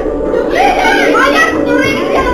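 Several people's high-pitched, excited voices talking over one another, with steady background music underneath.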